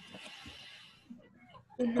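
Faint background noise and hiss from open microphones on a video call, with scattered faint voice sounds, then a man starts speaking near the end.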